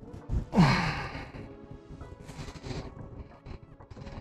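A man's breathy sigh with a falling pitch about half a second in, then a softer breath near the middle, over faint background music.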